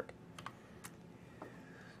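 A few faint, short computer-key clicks, spaced about half a second apart, as the presentation slide is advanced.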